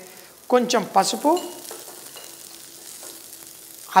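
Steady light sizzle of hot oil frying onions, cashews and whole spices in a non-stick kadai as turmeric and ground spices are sprinkled in.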